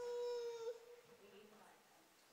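A child's voice holding one long, steady, high call for about a second, then fading out.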